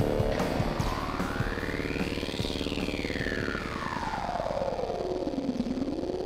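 Radio show bumper music coming back from a break: distorted rock music with an electronic effect that sweeps up in pitch to a peak about halfway through, then sweeps back down low near the end.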